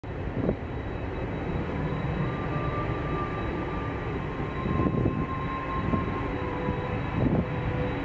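Boeing 767 airliner's jet engines running: a steady rumble with a faint whine held on a few steady pitches, joined by a few short thumps.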